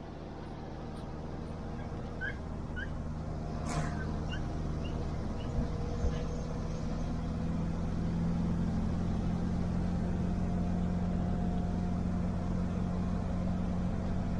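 A vehicle's engine and road noise heard from inside the cabin while driving, a steady low hum that grows louder over the first several seconds and then holds steady.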